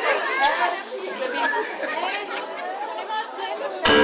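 Several people talking at once in a hall, a mix of overlapping voices. Just before the end, loud music starts suddenly.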